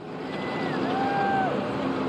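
Caterpillar backhoe loaders working their buckets into a dirt pile: the diesel engines run steadily under load, with a brief whine that rises and falls midway.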